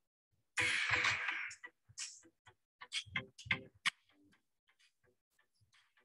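A phone being handled close to the microphone: a brief rustle about half a second in, then a quick run of light taps and clicks, before it goes still.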